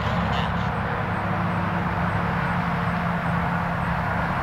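Graupner Husky 1800S foam RC plane in flight, its electric motor and propeller giving a steady low drone over a hiss of outdoor noise.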